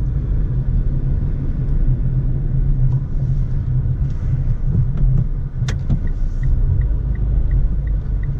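Steady low rumble of engine and road noise inside a Mitsubishi car's cabin while driving. Near the end a sharp click is followed by a run of short high beeps, about three a second.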